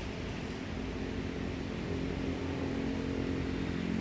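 A motor engine running with a steady hum that slowly grows louder.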